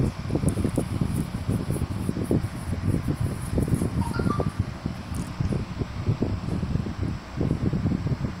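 Low, fluttering background rumble of room noise on the microphone, with two faint short beeps about four seconds in.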